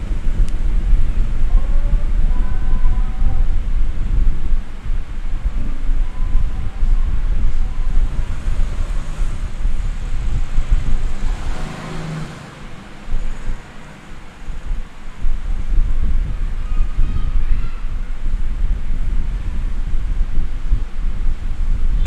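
Loud, steady low rumbling noise, dipping briefly about twelve seconds in.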